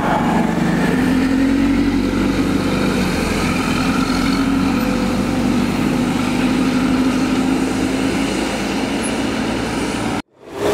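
City transit bus passing close by with a steady engine drone, over the noise of street traffic on a wet road.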